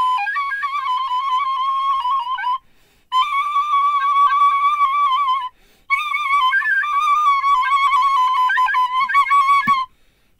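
White plastic recorder playing a high melody in three phrases, with short breaks about two and a half and five and a half seconds in. The notes stay in a narrow range with quick little turns and ornaments, and the playing stops just before the end.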